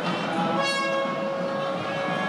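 A wind instrument starts one long, steady, horn-like note about half a second in and holds it, over ceremonial music.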